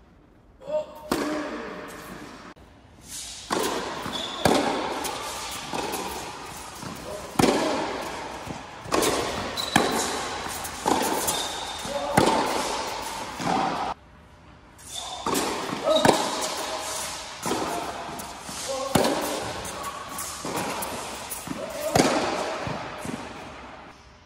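Tennis balls struck by rackets and bouncing on an indoor hard court, each sharp hit followed by a long echo in the large hall, with short squeaks of shoes on the court between hits. Play stops briefly a few times between points.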